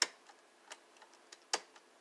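Desktop computer keyboard keys pressed one at a time: a sharp click at the start, another about a second and a half in, and a few fainter clicks between.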